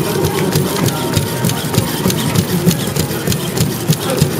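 A six-legged robot's servo motors running with a steady mechanical whirr as it walks, with rapid irregular clicks as its curved legs tap the course floor.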